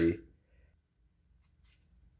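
The end of a man's sentence, then near silence with a few faint rustles of a cardboard 2x2 coin holder being turned over in the fingers.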